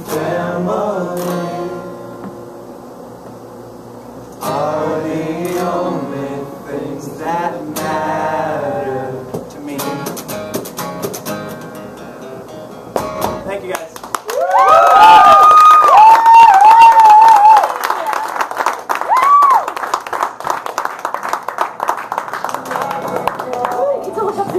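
A man singing unamplified over a strummed acoustic guitar, the song ending about thirteen seconds in. A small audience then claps, with loud whistling at the start of the applause.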